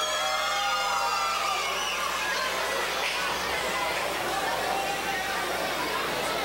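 Live wrestling crowd chattering and calling out between announcements, with a few drawn-out shouts in the first couple of seconds.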